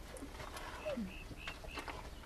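Birds calling faintly: a few short high chirps and some lower, falling calls.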